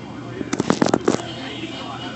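A quick cluster of sharp crackling clicks lasting well under a second, about half a second in, over a steady low background hum.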